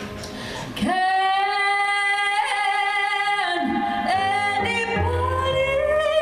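A woman singing live with keyboard accompaniment. About a second in she begins a long held note, then moves through shorter notes that rise toward the end.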